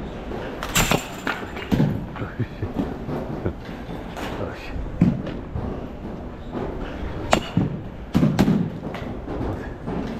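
Sharp cracks and thumps of baseballs in a batting cage, from bat contact and balls striking the net and fence. The loudest come about a second in and twice near the end, with smaller knocks between, over a rough background of other cages and faint voices.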